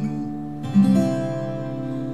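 Twelve-string acoustic guitar strumming a song accompaniment, chords left ringing, with a new chord struck about two-thirds of a second in.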